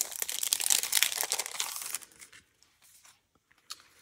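Clear plastic packet crinkling and rustling as it is pulled open and paper pieces are slid out, for about two seconds, then quiet apart from one small tick near the end.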